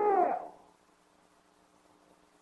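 A man's preaching voice holds out a long, drawn-out word on a steady pitch and stops about half a second in. Then there is near silence with only a faint steady hum from the old recording.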